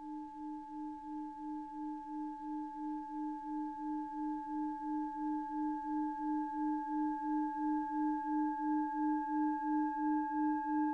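A singing bowl's long, steady ringing tone with a regular wobble of about three pulses a second, slowly swelling in loudness.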